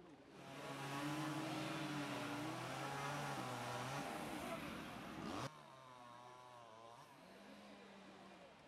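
Machinery engine running steadily and loudly, with a low steady hum. It cuts off suddenly about five and a half seconds in, leaving a quieter engine idling whose pitch rises near the end as it revs.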